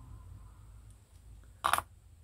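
A short clink as a metal pin header strip is handled, about three-quarters of the way in, over a faint low hum.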